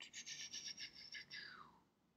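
A faint breathy sound from a person: a quickly fluttering hiss that slides down in pitch near the end.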